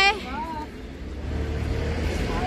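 Low, steady rumble of city street traffic, with a drawn-out called 'bye' fading out at the start and faint voices in the background.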